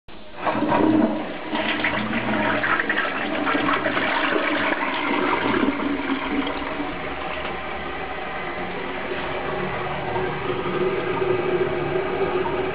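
TOTO CS210CN toilet flushing. Water rushes in suddenly about half a second in and is loudest over the first few seconds, then settles to a steady rush of running water.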